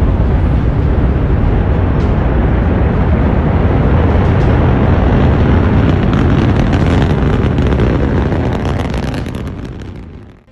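Gravity-1 solid-fuel rocket lifting off: a loud, steady rumble that fades out near the end.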